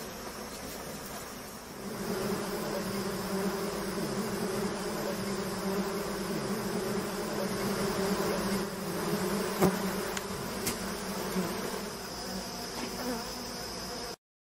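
Swarm of honey bees buzzing steadily around an opened wild comb, getting louder about two seconds in, with a sharp click about two-thirds of the way through.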